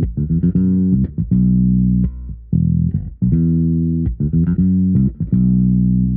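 Fender-style Jazz bass with both pickups on and the tone rolled off, through an Aguilar amp sim with mids and treble cut, lows and lower mids boosted and squashed by compression, playing a syncopated funk bass line. The notes are deep and dark with short staccato gaps, and the same short riff is played twice.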